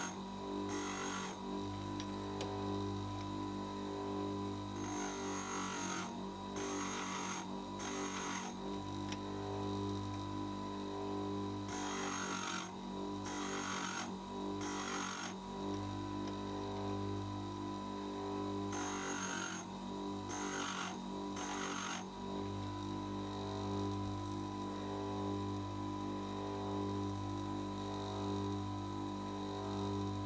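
Bench grinder running with a steady motor hum, while an end mill's end cutting edges are ground on its white wheel: brief grinding bursts, one per edge, in three groups of about four passes. The passes grind the secondary clearance, with a stop on the fence so all four edges are ground equally.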